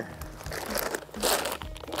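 A plastic mineral feed bag crinkling as it is picked up and handled, with louder rustles a little past halfway.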